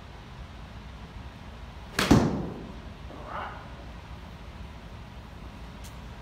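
A golf iron swung and striking a ball off a hitting mat about two seconds in: a quick swish ending in a sharp crack. A softer second sound follows about a second later as the ball reaches the netting.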